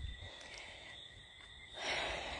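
A pause in talk: a faint steady high-pitched background tone, and a person's soft breath near the end.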